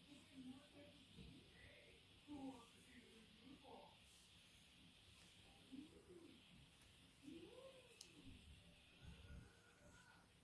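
Near silence: room tone with a few faint, short calls that rise and fall in pitch, clearest about six and seven and a half seconds in.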